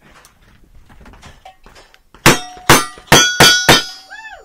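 Five gunshots at steel targets in quick succession, about three a second, each followed by the ring of struck steel. They start a little over two seconds in, after a quiet stretch.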